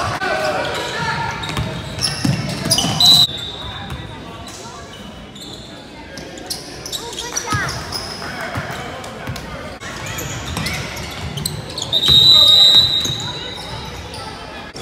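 Gym basketball game sounds: spectators talking and calling out over the ball bouncing on the hardwood floor. A referee's whistle gives a short blast about three seconds in and a longer, loud one about twelve seconds in.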